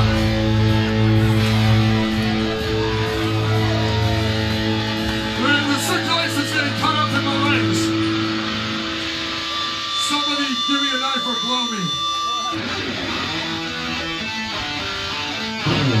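Live rock band's electric guitars and bass left ringing through the amps as a held chord fades, with voices talking and shouting over it. A steady high tone sounds about ten seconds in for a couple of seconds. Near the end the guitars crash back in to start the next song.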